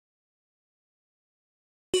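Digital silence, cut off at the very end by the sudden start of a pitched sample played from the Logic Pro Quick Sampler's keyboard.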